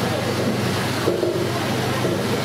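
Steady loud hiss with a low hum running underneath, and a brief fragment of a voice about a second in.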